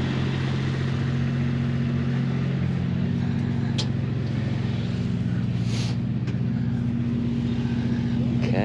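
Kawasaki Mule utility vehicle's engine running steadily, just after being started.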